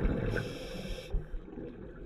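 Scuba diver breathing through a regulator underwater: a hiss of under a second early on, over a low rumble that fades away.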